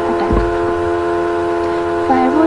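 A steady, chord-like hum of several fixed tones, unchanging throughout, with one brief low thump about a third of a second in.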